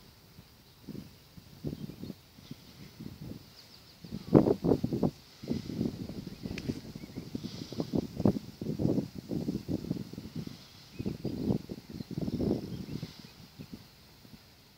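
Wind buffeting the microphone in irregular, uneven low bursts that come and go.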